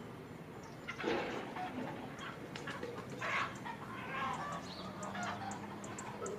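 Chickens clucking in a series of irregular calls, starting about a second in, with small birds chirping high and brief now and then.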